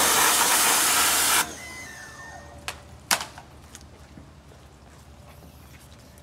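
Compressed-air blow gun blasting into the clutch master cylinder reservoir to clean it out, a loud hiss that cuts off suddenly about a second and a half in. A couple of short clicks follow about three seconds in.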